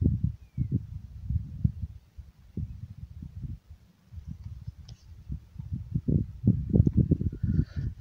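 Wind buffeting the microphone: an irregular low rumble that comes in gusts, stronger towards the end.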